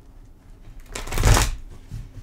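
A deck of tarot cards being shuffled by hand: one quick burst of cards fluttering together about a second in, with a few soft knocks of the deck in the hands around it.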